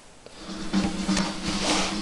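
Music starting to play through a small homemade 12 V miniature-tube amplifier (a 5672 driving two 5676s) and its speaker, coming in about half a second in with sustained low notes and a brighter swell near the end.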